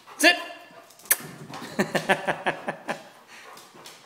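A dog's paws thudding up wooden stairs in a quick, even run of about seven steps, after a single knock about a second in.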